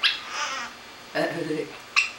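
A pet parrot squawks: a harsh, high call starts suddenly and lasts about half a second. Another short, sharp call comes right at the end.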